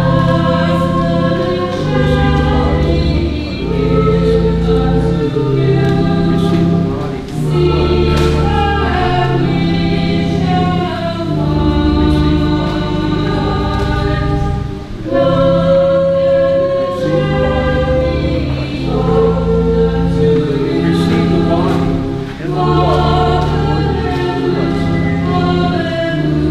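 A choir singing a slow hymn over sustained low chords, in long held phrases with short breaks between them.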